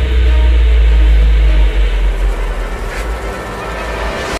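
A deep, loud rumble from the film's soundtrack, set over music, that eases off over the following seconds.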